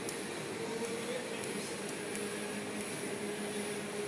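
Electric welding arc on stainless steel: a steady hiss with a faint hum underneath and a few small crackles.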